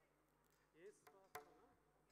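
Near silence in a hall: room tone, with a faint, brief voice and a single sharp click a little past the middle.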